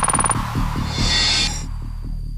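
News-programme transition effect leading into a music bed: a short rapid rattle, a hissing swell that cuts off suddenly about one and a half seconds in, then a low throbbing pulse about four times a second.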